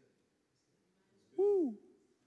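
A single short vocal sound from a person, like a sung 'ooh', about a second and a half in. It rises briefly and then slides down in pitch.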